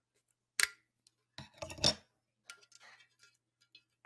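Metal scissors clicking and scraping against the top of a wine bottle as they pry at its stuck cap: a sharp click about half a second in, a loudest cluster of scrapes and clicks near two seconds in, then a few light ticks.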